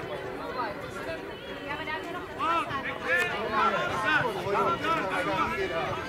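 Several children's voices calling and chattering at once, overlapping, with no single voice carrying through.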